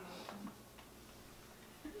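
Quiet room with a few faint, irregular clicks in the first second and a brief soft trace of voice at the start.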